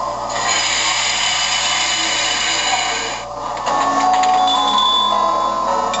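Recorded effects from a model steam locomotive's onboard sound system: a long steam-like hiss for about three seconds, then after a brief dip a set of steady ringing tones.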